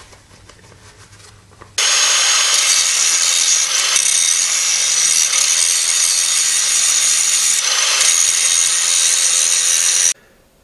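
Angle grinder started about two seconds in and grinding the cut end of a stainless steel tube: a steady, loud grinding noise with a high whine, easing briefly near the end.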